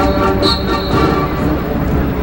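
High school marching band playing a march: brass chords over drums.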